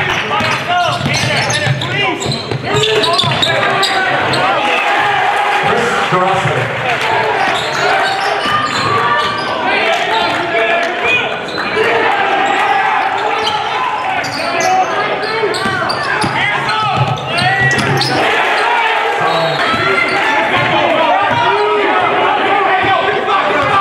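A basketball being dribbled on a hardwood gym court, with indistinct shouts from players and spectators echoing in the large gym.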